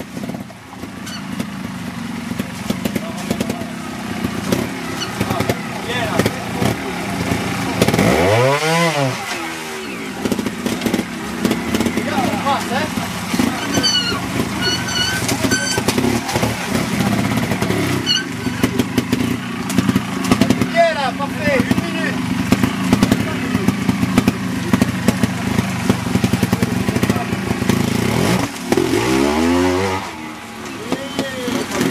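Trials motorcycle engine running through a rocky section, held low and steady between throttle blips. A sharp rev rises and falls about eight seconds in, and another comes right at the end.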